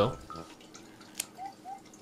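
A pet nail clipper snipping a cat's claw: a single sharp click about a second in, against a quiet background.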